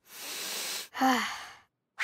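A boy's long breath in over the fresh-baked cake, then a short falling 'mmm' of pleasure, a contented sigh at its smell.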